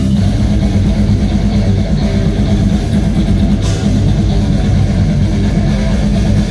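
Death metal band playing live through a PA: heavily distorted, down-tuned guitars and bass with drums, loud, dense and unbroken.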